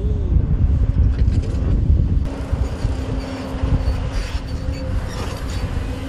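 A tracked hydraulic excavator at work: a low diesel engine rumble with a steady whine, joined by a second, higher whine about four seconds in, and a few creaks and clanks.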